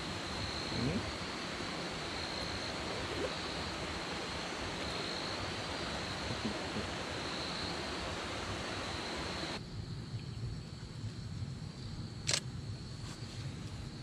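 Steady rush of creek water with an insect trilling at one high, steady pitch. About two-thirds of the way through, the rush drops suddenly to a quieter night background in which the trill goes on faintly, and a single sharp click follows near the end.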